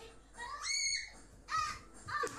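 A child's high-pitched squeal, twice: a longer one about half a second in, then a shorter one near the end.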